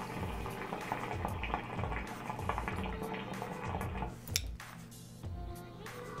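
Hookah water bubbling and gurgling in the base as a long draw is pulled through the hose, stopping about four seconds in.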